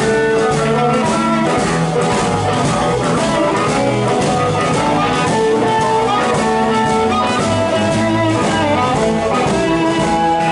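A live blues band playing an instrumental passage in E, with electric guitar, piano, bass and drum kit under held blues harmonica notes.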